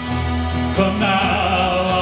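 Live acoustic folk music: strummed acoustic guitar with a mallet-struck percussion instrument, and a held note with vibrato coming in about a second in.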